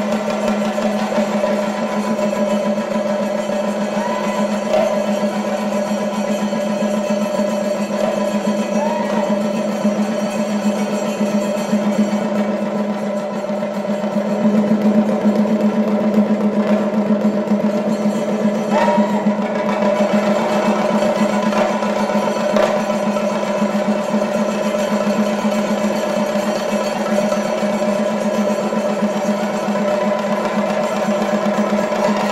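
An ensemble of chenda drums played in a fast, continuous roll, the strokes packed so close they form one unbroken, driving sound.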